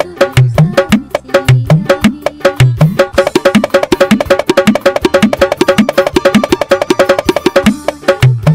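Electronic octapad struck with drumsticks, triggering drum and percussion samples in a fast, steady rhythm with a deep drum on the beat. About three seconds in it switches to a faster, busier run of sharp hits that lasts until near the end, when the deep drum pattern returns.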